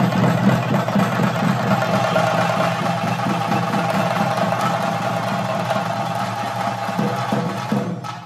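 Theyyam ritual drumming: a group of chenda drums beating a dense, continuous rhythm, with a steady higher ringing tone running above the drums.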